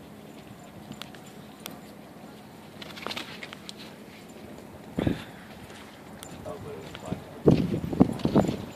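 Faint, indistinct voices of people close by over a steady outdoor background. Two short bumps come about five seconds in and near the end, the second the loudest.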